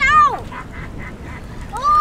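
A child's excited high voice: a short 'ooh' at the start, then near the end a long, high, held cry lasting about a second.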